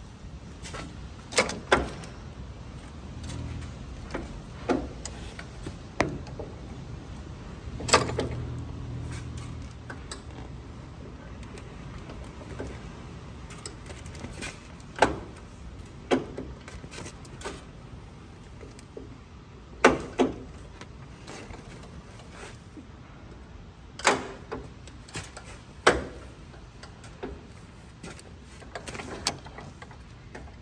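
A dozen or so sharp metallic clicks and clunks at irregular intervals, the loudest about eight seconds in and again about twenty seconds in, from hands working around the magneto of a 1922 Mack AB truck engine while it is turned over by hand.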